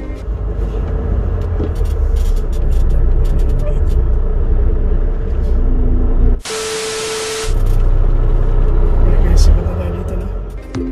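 Deep rumble of a heavy truck running, broken about six and a half seconds in by a sudden hiss lasting about a second before the rumble returns.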